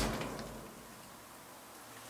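A deep, low thud rumbling in the rock passage and dying away over about half a second. It is one of several unexplained low thuds, taken for a door slamming somewhere.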